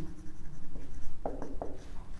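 Marker pen writing on a whiteboard: a run of short, separate strokes as letters are written, most of them in the second half.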